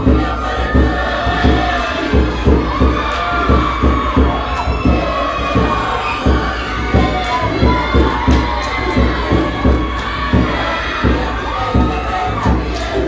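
A drum beat of evenly spaced low thumps, about two a second, under a chorus of singing and shouting voices, for a Cook Islands dance performance.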